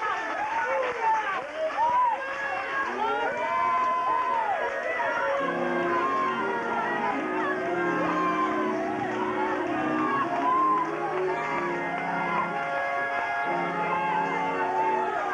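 Several gospel singers' voices singing and calling out praise over one another. About five seconds in, held low instrumental chords join them. The chords break off briefly near the end and then come back.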